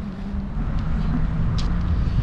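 A car moving slowly: a steady low engine and road rumble that grows a little louder about half a second in.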